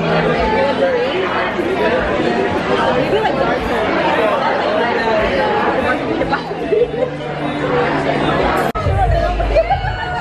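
Several people chatting and laughing at once, voices overlapping. Near the end the sound breaks off for an instant and louder, excited voices follow.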